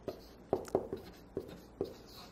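Marker pen writing on a paper flip chart: about five short, faint strokes as the letters are drawn.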